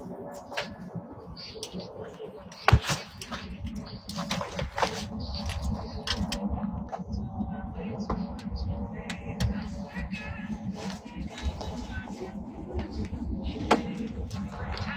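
Airliner cabin background: a steady low hum with indistinct voices of other passengers, and one sharp knock about three seconds in.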